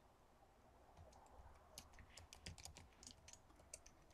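Faint typing on a computer keyboard: a run of quick key clicks starting about a second and a half in.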